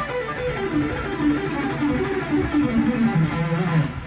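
Electric guitar, a Charvel, playing a fast pentatonic run built from linked scale fragments. It is a quick string of single notes that mostly step downward in pitch and settles on a held lower note near the end.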